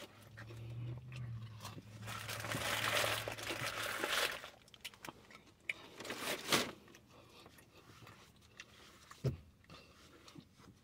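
Close-up chewing of crispy seasoned French fries with the mouth closed: wet crunching over a low hummed "mmm" for about four seconds, then a few soft mouth clicks and smacks.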